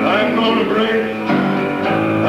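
Live band music with guitar to the fore, playing on without a break.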